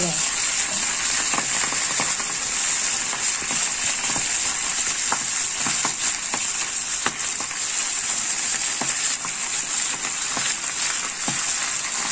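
Minced garlic and fresh Swiss chard leaves frying in hot oil in a pan: a steady sizzle with a few sharp crackles scattered through it.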